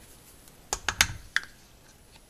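Four light clicks and a soft knock in quick succession, about a second in, from kitchen utensils tapping against a stainless steel pot.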